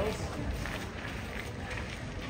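Footsteps on stone paving, with a steady murmur of crowd chatter.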